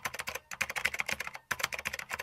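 Computer keyboard typing sound effect: rapid keystrokes in three quick runs, keeping time with the end-card text as it types onto the screen.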